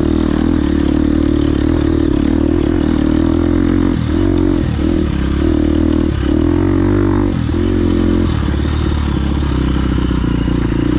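Enduro dirt bike engine running hard on a rough trail, its pitch dipping and climbing again several times between about four and eight seconds in as the throttle is rolled off and opened.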